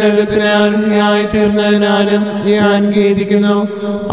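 Devotional background music: a steady drone held on one low note with its overtones, in the manner of a chant accompaniment.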